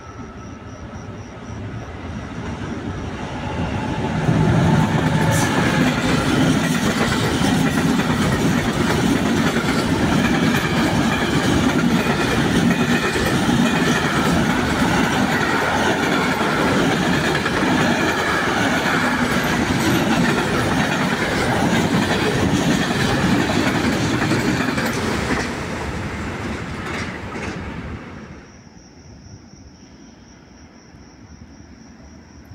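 Intermodal container freight train hauled by a Medway E494 electric locomotive passing through the station at speed. The noise builds over the first four seconds as the train arrives, then holds as a steady rush of wagons with the clickety-clack of wheels over the rails. It eases about 25 s in and drops away sharply near the end.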